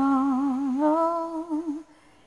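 A woman's voice in a karaoke cover holds one long wordless note with a wavering vibrato, rising slightly partway through and wobbling more before it stops just short of two seconds.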